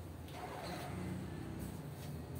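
Faint low steady rumble of a running engine.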